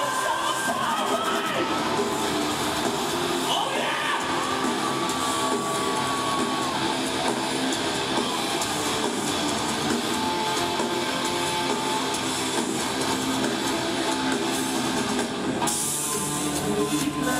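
A rock band playing live, with electric guitar, in continuous full-band music.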